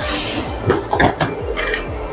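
A large polycarbonate sheet being slid and handled on a metal shear table: a rush of sliding hiss at the start, then a few short knocks and a brief scrape as the sheet flexes and bumps the table.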